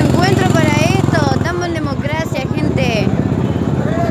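Several people shouting and yelling over the steady running of a nearby vehicle engine.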